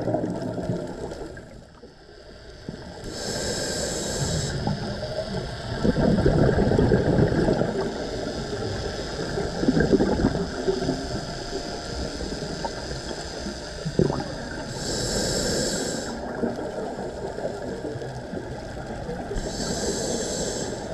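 Scuba diver breathing through a regulator underwater: three hissing inhalations, about three seconds in, around fifteen seconds and at the end, with long bursts of gurgling exhaled bubbles between them.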